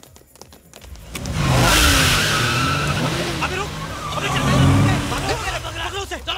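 Car engine revving hard with tyres screeching, starting about a second in and staying loud for several seconds before easing near the end.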